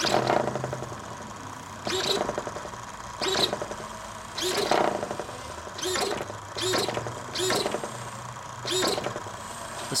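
Hitec RC servos on a 6.6-volt A123 pack driving a model plane's rudder: a short buzzing whine about eight times, roughly once a second, each time the rudder stick is flicked, with a slight jitter as the surface settles.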